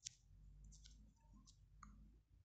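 Near silence with a few faint, sharp clicks spread through two seconds: fingertip taps on a smartphone's touchscreen keyboard as the backspace key is pressed.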